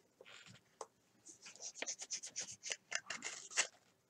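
A hockey card being slid into a clear plastic sleeve: a run of quick, soft rustles and scrapes of plastic against card, busiest in the second half.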